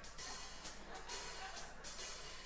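Quiet band music with a drum kit keeping a light beat, soft repeated cymbal strokes over a faint low bass.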